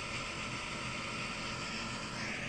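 Steady background hiss with a low hum: room tone, with no distinct event.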